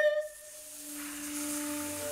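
Contemporary chamber music for bass flute, bass clarinet and female voice: a held note with a slow wavering vibrato ends just after the start, giving way to a quieter airy, breathy hiss with a faint low sustained tone beneath it.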